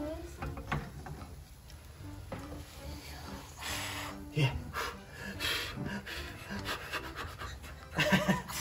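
A person breathing in short puffs close to the microphone, with a few brief bursts of breath between about three and a half and six seconds.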